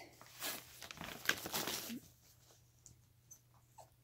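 A capuchin monkey rummaging inside a glossy gift bag: crinkling rustles through the first two seconds, mixed with a few faint short squeaks from the monkey. After that it goes quieter, with scattered small rustles and one more faint squeak near the end.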